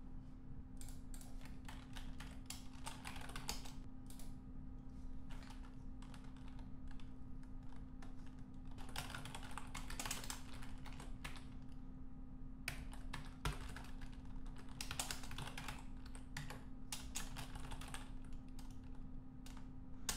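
Computer keyboard typing in bursts of quick keystrokes with short pauses between them, over a faint steady hum.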